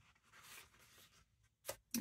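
A paper page of a hardback book being turned by hand: a soft rustle as it slides over, then a brief crisp flap near the end as it comes down.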